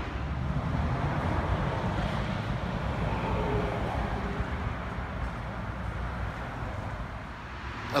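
Steady rumble of road traffic, a continuous low noise with no distinct passes or impacts.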